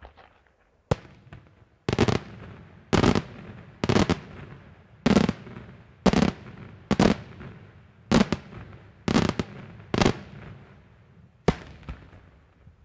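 Daytime aerial firework shells bursting overhead: a string of loud bangs, roughly one a second, each trailing off in an echo.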